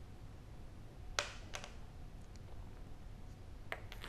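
A few light, sharp clicks and taps of lab items being handled and put down on a plastic tray: a metal spatula and a brown glass reagent bottle. Two clicks come about a second in and two or three more near the end, over a faint low hum.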